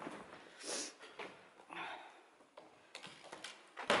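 Scattered footsteps and scuffs crunching on debris-strewn floor inside an empty room, with a sharp knock near the end.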